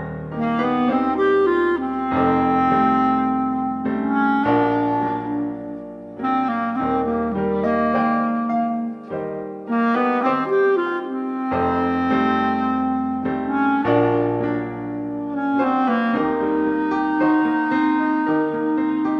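A clarinet playing a melody of held notes over grand piano accompaniment.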